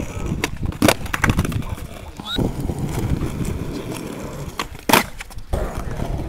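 Skateboard wheels rolling on rough concrete, with sharp wooden clacks of the board popping and landing flatground tricks: several clacks in the first second and a half, and another loud clack about five seconds in.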